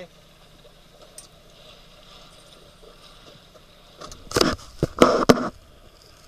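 A steady low background of wind and water, then about four seconds in a cluster of loud bursts of noise thudding on the camcorder's microphone for about a second and a half, the kind made by wind gusts or handling on a small camera.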